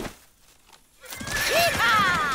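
A short knock at the start, then about a second in a cartoon sound effect of horses riding off, with a horse whinnying near the end.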